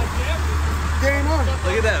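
Steady low hum of a fishing boat's engine running, with excited voices over it.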